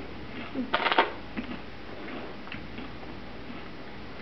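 Doritos chip bag crinkling as a dachshund paws at it: a short burst of crackling about a second in, then a few light, scattered crinkles.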